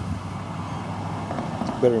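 Steady rushing noise of a light breeze, about three miles per hour, blowing across the microphone.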